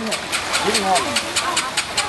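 People talking over a small engine running at idle with a steady rapid ticking, about eight beats a second.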